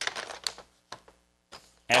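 A few light clicks and taps of tools and lead and glass pieces being handled on a leaded stained-glass panel on the workbench, mostly in the first second.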